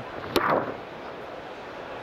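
A single sharp crack of a cricket bat striking the ball, about a third of a second in. A short burst of noise follows, then steady low background noise from the ground.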